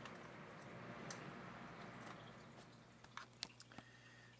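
Faint, soft hiss of an electric fan winding down after being switched off, fading away over about three seconds over a steady low hum. A few light clicks follow near the end.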